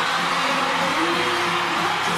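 Live pop concert music, loud and steady, recorded from among the audience.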